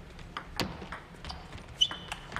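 Table tennis ball in a rally: a few sharp clicks of the celluloid-type ball striking rubber paddles and bouncing on the table.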